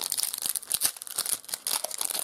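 Foil wrapper of a 2019 Marvel Flair trading card pack crinkling and tearing as it is pulled open by hand, an irregular crackle.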